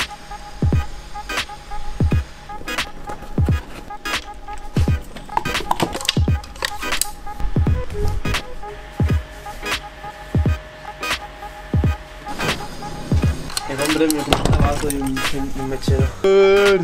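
Background music with a steady beat built on a deep kick drum and crisp high percussion.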